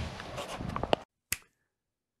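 Camera handling noise: outdoor rustle and a few sharp clicks as a gloved hand grips the camera. About a second in it cuts to dead silence, broken once by a single click.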